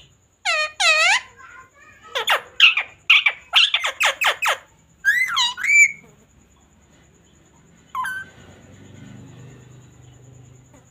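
Ringneck parakeet calling: two loud calls, then a quick string of short screeches, a few gliding calls, and one last call about eight seconds in.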